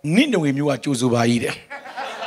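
A man speaking into a microphone in a drawn-out, wavering voice, then near the end the congregation starts to laugh.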